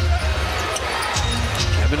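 A basketball being dribbled on a hardwood court during live play, a few bounces across two seconds. Arena music with a heavy low bass plays underneath.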